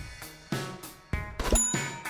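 Background music with a steady drum beat, and a short bright bell ding about one and a half seconds in: a notification-bell sound effect.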